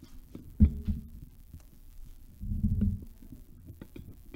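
Low thumps and rumbling handling noise from a microphone stand being adjusted by hand, carried straight into the microphone on it: one sharp thump about half a second in, then a longer rumble near three seconds.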